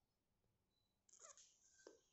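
Near silence: quiet room tone, with a few faint, brief sounds from about a second in and a small click near the end.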